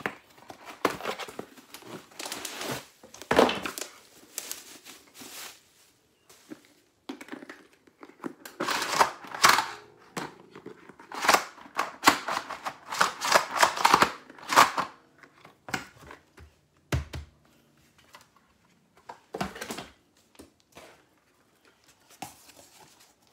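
Cardboard box and plastic packaging handled and opened, crinkling and tearing in irregular bursts, busiest through the middle, as a collapsible plastic stool is unpacked.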